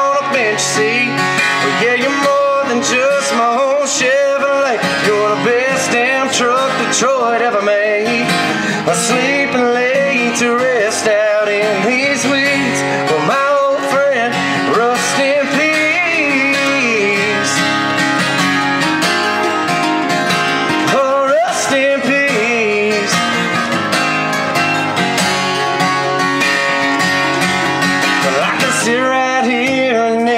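Live country song on guitar, in a stretch with no sung words between choruses; guitar is to the fore, with bending melody notes.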